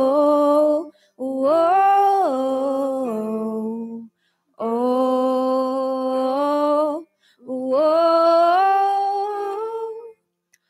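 A single voice humming a slow melody without words, in long phrases of a few held notes each, separated by short pauses for breath.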